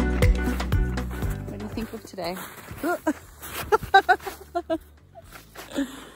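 Background music with a steady beat fades out over the first two seconds. After that come short bursts of a person's voice, brief sounds rather than words, with a few faint clicks between them.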